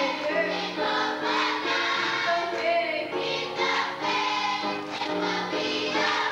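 A children's choir singing a gospel song together, held notes changing steadily without a pause.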